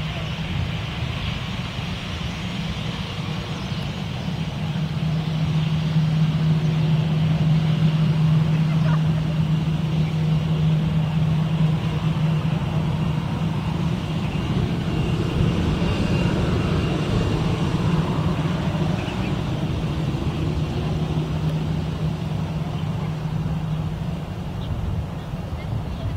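An EVA Air Airbus A321 jet airliner's engines running at taxi power as it taxis past and turns onto the runway. It is a steady low hum that grows louder about five seconds in and eases slightly toward the end.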